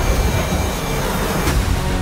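Trailer score with a loud, dense rumble of sound effects under it and one sharp hit about one and a half seconds in. Steady musical tones come in near the end.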